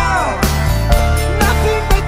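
Live pop-rock band with a male lead vocal singing, over a steady beat of about two drum hits a second.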